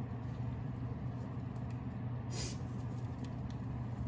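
Mustard seeds, urad dal, chana dal and cumin sizzling lightly in hot oil in a small pan, the tempering (popu) for a pachadi, stirred with a silicone spatula, with a few small pops and a brief louder burst about two and a half seconds in. A steady low hum runs underneath.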